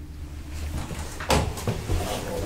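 Elevator's hinged landing door and car area handled as someone steps in: a sharp knock about a second and a half in, then a duller thump near the end, over a steady low hum.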